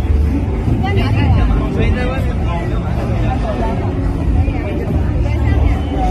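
Outdoor street ambience: people's voices chatting, clearest about one and two seconds in, over a steady low rumble.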